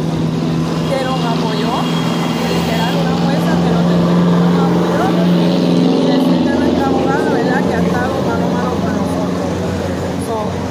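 A motor vehicle's engine running steadily close by, a low, even hum that drops in pitch about two thirds of the way through, heard under people's voices.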